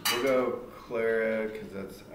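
A sharp click, then a person's voice in two short phrases, with a small room's sound.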